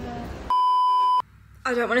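A single electronic beep: one steady, high, flat tone lasting about two-thirds of a second, starting and stopping abruptly about half a second in.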